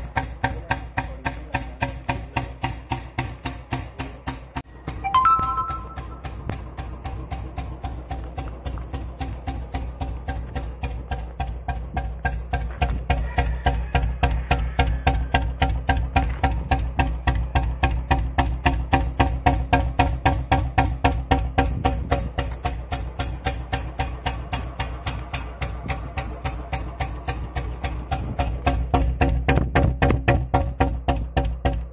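Royal Enfield Standard 350 single-cylinder engine idling through a Patiala silencer on the stock bend pipe: an even, steady beat of exhaust thumps, about five a second. A brief higher-pitched sound comes about five seconds in.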